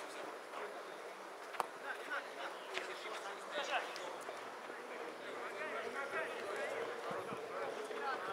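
Players' voices calling out across an outdoor football pitch during play, with a sharp knock of a ball being kicked about a second and a half in.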